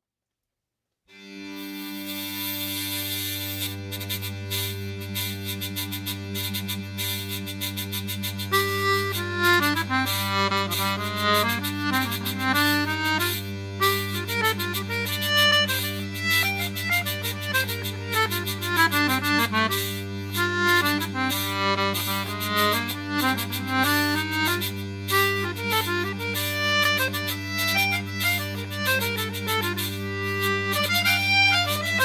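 Hurdy-gurdy playing a halling: after a brief silence, its steady drones start about a second in, and the melody comes in over them at about eight seconds.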